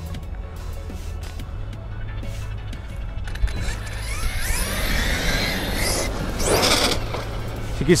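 Electric RC monster truck's brushless motor whining and its tyres hissing on asphalt as it is driven hard, the whine rising and falling with the throttle. The sound builds from about three seconds in and is loudest around six to seven seconds in as the truck speeds past, over steady background music.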